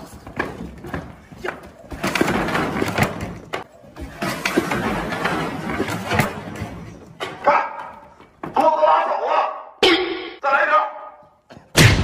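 Scuffling and voices, then a single loud crash near the end as a person tumbles over a wooden bench onto the ground.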